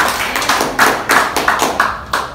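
A small audience clapping: irregular sharp hand claps several times a second, dying away right at the end.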